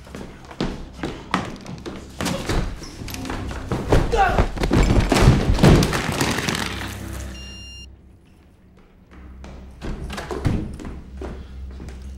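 Film soundtrack of a frantic action moment: a rush of heavy thuds and bangs over tense music, with a voice crying out around the middle. A short high ringing tone comes about seven seconds in, then a brief lull and a few more thuds near the end.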